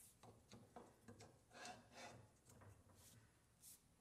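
Near silence with a few faint, short scraping clicks: a square broach being pressed through brass on a small arbor press, its teeth cutting the hole square.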